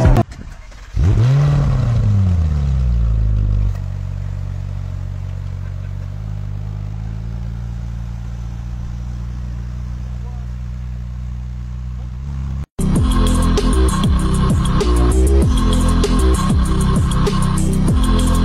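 Ferrari V8 engine blipped once, its pitch rising and falling, then running steadily at a lower pitch. After a brief dropout near the end, electronic music with a steady beat takes over.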